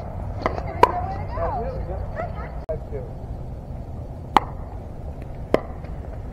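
Pickleball paddles striking the hard plastic ball in doubles rallies: sharp, short pops. Two come close together in the first second, the louder second, and two more come about a second apart in the second half.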